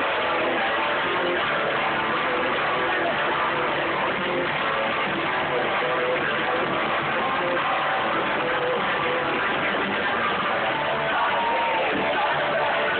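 Live rock band playing at a steady, loud level, with electric guitar to the fore over drums.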